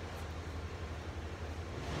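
Steady low engine rumble from the big trucks of a tree-trimming crew working nearby.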